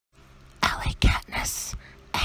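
A woman whispering a few words, about half a second in, finished by near the end.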